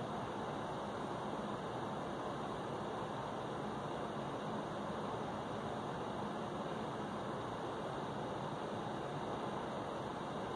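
Steady, even background hiss of room noise, unchanging throughout, with no distinct events.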